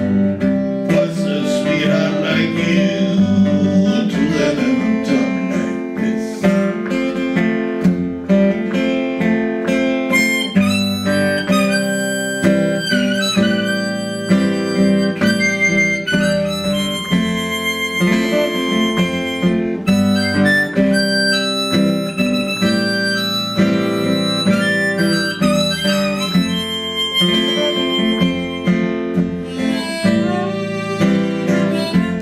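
Blues harmonica played from a neck rack over acoustic guitar accompaniment, with sustained and bent harmonica notes over the steady guitar rhythm.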